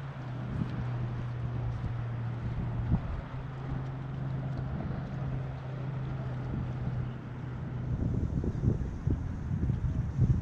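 Wind noise on the microphone over a steady low engine drone, which stops about eight seconds in as the wind rumble grows stronger.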